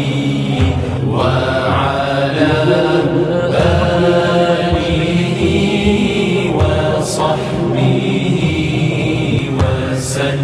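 Mawlid chanting: men's voices in a melodic Islamic religious chant, sung in long drawn-out lines.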